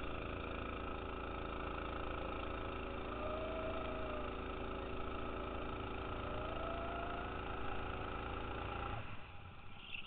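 Go-kart engine running at steady high revs, then dropping off sharply near the end as the throttle is lifted.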